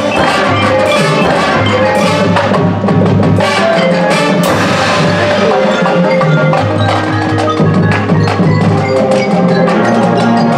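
A marching band playing its field show: mallet percussion (marimbas, chimes) and drums struck over sustained low notes, continuous throughout.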